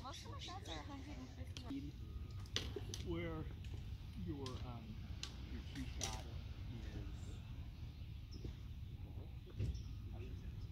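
Faint background chatter of distant voices at an outdoor driving range, with a couple of sharp clicks from distant golf club strikes, about two and a half and six seconds in.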